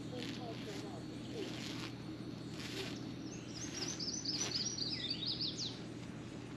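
A songbird sings a rapid run of quick, high, descending chirps for about two and a half seconds in the second half. Underneath are a steady low hum and a few brief rustles.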